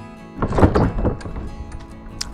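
Wooden shed double doors being pushed open, a thump with a short scraping rush about half a second in, over background guitar music.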